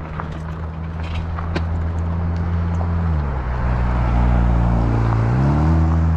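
A low, steady motor hum that drops in pitch about three seconds in and climbs back up about two seconds later, growing louder overall. A few light clicks come through in the first two seconds.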